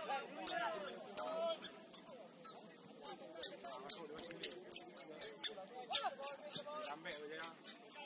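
Distant voices calling across a football match, with a run of sharp, high clicks or squeaks, about two a second, from about three seconds in.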